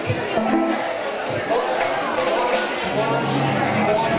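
A band's stage instruments played briefly during a sound check: plucked string notes and held low notes, with voices in the room.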